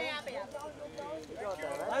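Men's voices calling out to one another, short shouted calls such as "bhai" overlapping, with one loud wavering call at the start.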